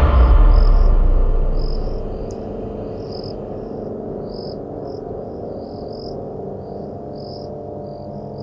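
Crickets chirping in short, irregular trills over a low musical drone, which is loud at first and fades over the first two seconds to a steady hum.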